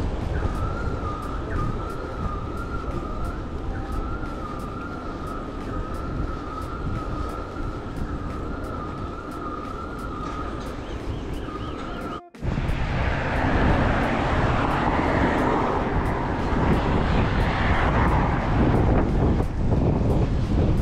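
Wind rushing over the microphone while cycling along a street. A thin wavering high tone runs under it for the first twelve seconds. After a sudden cut about halfway, the wind noise is louder.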